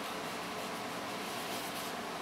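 Steady room noise: an even hiss, like a fan or air conditioner running, with no distinct knocks or rubs standing out.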